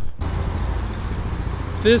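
Street traffic: a steady low vehicle rumble under a broad hiss, starting just after a click at the very beginning.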